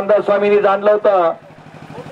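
A man's commentary voice, drawn-out and sing-song with long held vowels, that breaks off about a second and a half in. A low, steady mechanical throb runs underneath.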